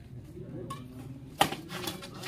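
Badminton racket striking a shuttlecock: one sharp crack about one and a half seconds in, after a fainter click, over faint voices.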